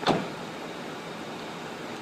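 A single short thump just after the start, fading quickly, then a steady hiss of outdoor background noise.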